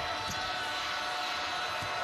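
A basketball being dribbled on a hardwood court, a few bounces heard over the steady noise of the arena crowd.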